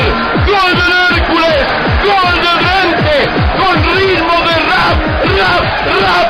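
Music: a sung vocal line over a deep kick-drum beat, about three beats a second.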